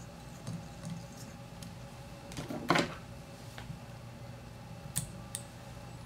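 Quiet handling noises of fly tying at the vise, thread being wrapped from a bobbin to tie turkey biots onto the hook: one brief scratchy noise a little before halfway and two light clicks near the end, over a steady low hum.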